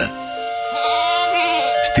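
Soft music with long held notes and a sheep bleating once with a quavering voice about a second in: a sound effect laid over the music.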